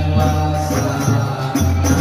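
Islamic devotional chanting with musical accompaniment, its low notes held and shifting pitch about once a second.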